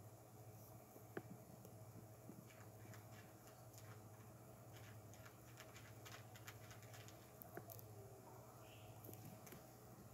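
Near silence: faint background with a low steady hum and a few faint scattered ticks.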